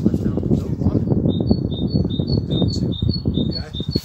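A small bird repeats a high two-note chirp, about three notes a second, starting about a second in. Under it runs a loud, ragged low rumble.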